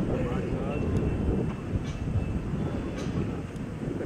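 Voices talking, in speech that wavers and breaks, over a steady low outdoor rumble.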